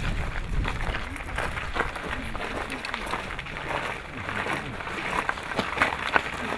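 A group of people walking on gravel: many crunching footsteps with indistinct chatter from several voices.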